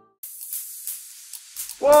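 After a brief silence, a steady high hiss with a few faint ticks opens the song; near the end a man's voice comes in loudly on a drawn-out 'whoa' that falls in pitch.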